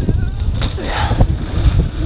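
Wind buffeting the microphone over the rumble and rattle of a downhill mountain bike riding fast over a dirt trail, with a few sharp knocks from the bumps.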